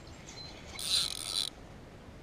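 Spinning fishing reel whirring briefly about a second in, for under a second.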